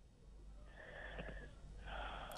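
A faint, breathy intake of breath that swells over about a second and a half.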